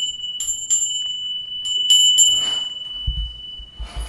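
A small bell rung by hand: one steady, high ringing tone, struck again five times in two quick groups, the ringing dying away near the end.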